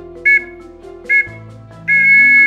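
A two-note whistle blown in short blasts, two inside this stretch about a second apart, then a long blast beginning near the end: the scout whistle signal of three short and one long that calls the patrol leaders. Steady background music plays underneath.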